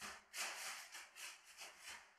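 Shoes shuffling and scraping over thin polyethylene (polyane) sheeting laid on a tiled floor, the plastic rustling and crinkling in a series of short scuffs, as the sheet is tested for how much it slides underfoot.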